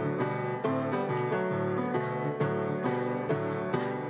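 Piano playing the upbeat introduction to a song in a boogie-woogie style, chords struck on a steady beat about twice a second.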